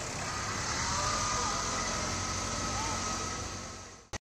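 Outdoor ambience: a steady low rumble with a faint thin, slightly wavering tone above it, fading out near the end.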